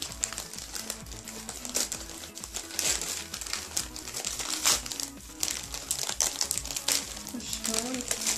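Gift-wrapping paper crinkling and rustling in short irregular bursts as a pet rat pushes and burrows between wrapped packages in a cardboard box. Background music plays underneath.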